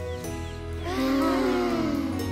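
Gentle cartoon background music. About a second in, several voices let out a long, falling, contented sigh, as after breathing in the forest air.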